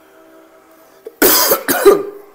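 A man coughing hard twice in quick succession, starting a little over a second in, part of a coughing fit that interrupts his speech.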